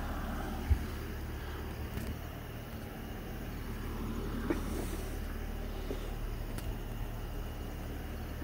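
Steady low background hum with a faint even hiss, broken by a few faint knocks.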